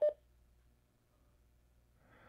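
AnyTone AT-D878UVII Plus handheld DMR radio keyed up: a click of the push-to-talk and a brief beep dropping in pitch right at the start. After it there is only a faint low hum while it transmits.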